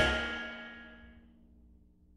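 A lounge band's final chord ringing out and fading away over about a second, ending the song, with a few low notes lingering briefly after the rest has died.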